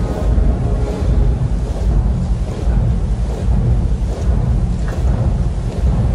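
Wind buffeting a handheld camera's microphone outdoors: a steady, loud, low rumble with no clear events standing out.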